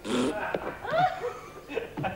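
A man laughing: a sharp outburst at the very start, then a few short, broken laughing sounds that fade out by about a second and a half in.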